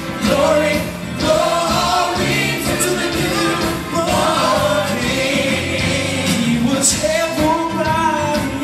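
Live amplified singing: a male lead vocalist on a microphone, with backing singers and a band playing behind him.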